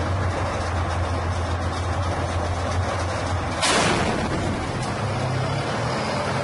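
A tank's engine running with a steady low drone. About three and a half seconds in comes a louder blast with a rushing tail, the tank's gun firing.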